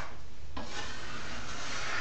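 A 6-inch steel drywall knife drawn down an outside corner, scraping a second coat of joint compound smooth: a steady rasping scrape starting about half a second in.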